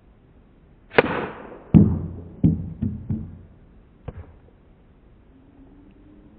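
A croquet mallet cracks against the ball about a second in. The ball then thuds onto a wooden plank ramp, the loudest knock, with a low ring from the board, and bounces along it in three quicker, fading knocks, with one last light knock about four seconds in.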